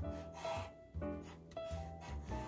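Black felt-tip marker rubbing across paper in several short strokes as small rectangles are drawn, over light background music.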